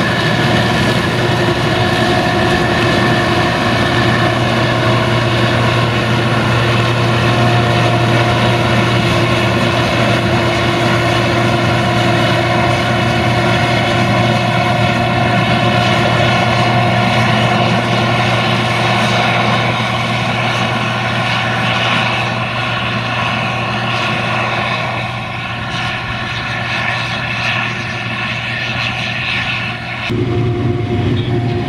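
Case IH 2166 Axial-Flow combine working under load while harvesting corn: its diesel engine, threshing rotor and corn header make a steady, loud mechanical drone with a strong low hum. A Fiat 1380 DT tractor hauling a grain trailer runs close alongside at first, and the drone grows a little fainter over the last third as the combine moves off.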